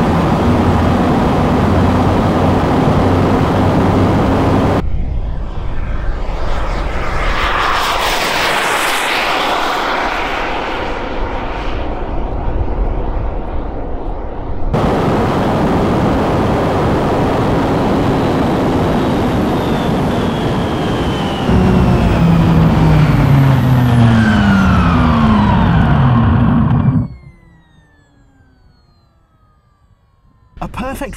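Onboard sound of a jet-powered RC car at speed on a runway: a loud, steady rush of wind, tyres and engine, broken by abrupt cuts. Near the end several falling whines are heard as the car slows, then the sound cuts off suddenly to much quieter.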